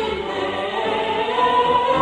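Church choir singing, the voices holding long notes, accompanied by piano and strings with low sustained notes beneath.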